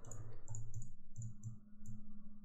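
Soft clicking of a computer mouse and keyboard, about eight short clicks over two seconds, some in close pairs, over a faint steady hum.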